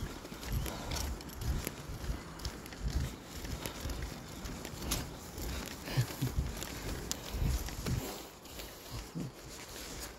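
Small wheels of an empty folding hand truck rolling and rattling over asphalt as it is pulled along, with uneven knocks and footsteps.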